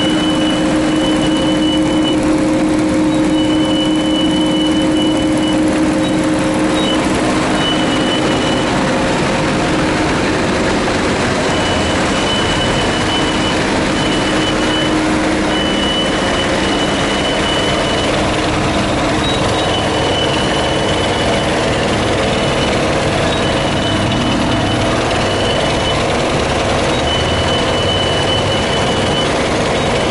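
Sandvik QA440 mobile screening plant running while it screens damp lime: its engine, twin high-frequency vibrating screen boxes and conveyors make a loud, steady din with a low hum. A high electronic beep sounds over it in short runs that come and go.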